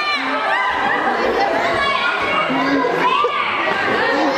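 A group of young children chattering and calling out over one another, several voices at once.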